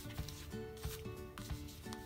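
Quiet background music with soft held notes, under a few faint rustles and taps as a ribbon is wrapped around a small paper booklet.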